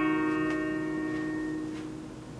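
The last guitar chord of the backing music rings out and fades away, with no singing over it. There are a couple of faint clicks as it dies.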